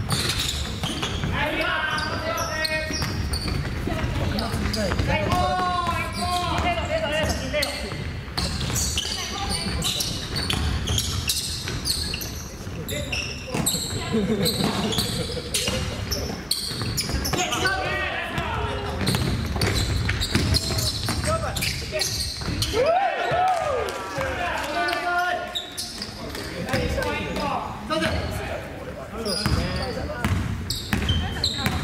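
A basketball bouncing repeatedly on a wooden gym floor, with players' shouts and calls echoing around a large gymnasium.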